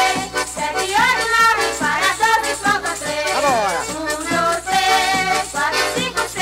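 Pernambuco pastoril band music with a shaker keeping a quick, steady beat under the tune. A long downward pitch slide comes a little past halfway.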